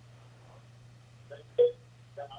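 Steady low hum with a brief murmured vocal syllable about one and a half seconds in.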